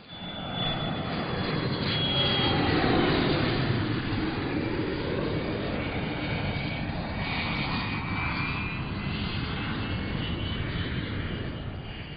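Cirrus SF50 Vision jet prototype going by on the runway: its single Williams FJ33 turbofan makes a steady rush with a thin high whine that drifts down a little in pitch. The sound swells to its loudest about three seconds in, holds, then fades near the end.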